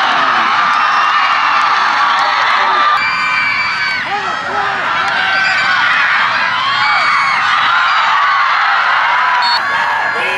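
Football stadium crowd cheering and shouting, many voices yelling over one another.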